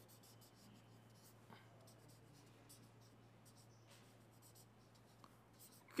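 Faint strokes of a felt-tip marker writing on paper, a few short scratches scattered through near silence, over a faint steady low hum.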